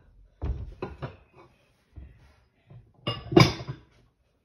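Bowls knocking and clinking against each other as they are stacked away, with a few light knocks in the first second and a louder clatter a little after three seconds in.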